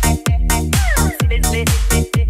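Electronic club dance music from a DJ mashup mix. A steady kick drum hits about two beats a second, and a short falling synth swoop comes about a second in.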